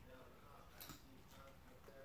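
Near silence with a few faint ticks of a knife and fork cutting through puff pastry on a ceramic plate, the clearest about a second in.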